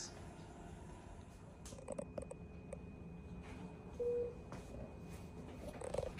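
Quiet room hum with a few soft clicks, and one short low electronic beep about four seconds in.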